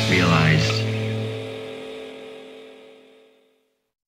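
Punk rock band ending a song: the last chord rings out and fades away to silence over about three and a half seconds. A brief vocal cry sounds over its first half-second.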